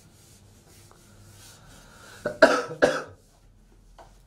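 A person coughing twice in quick succession, about two and a half seconds in.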